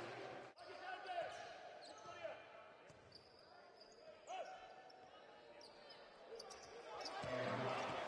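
Court sound of an indoor basketball game: a basketball bouncing on the hardwood floor and sneakers squeaking, over the murmur and voices of the crowd in a large hall. The crowd noise swells near the end.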